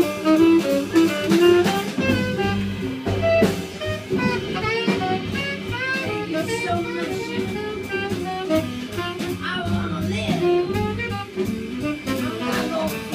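Live jazz combo playing an instrumental passage, a tenor saxophone carrying a quick run of notes over double bass and drums.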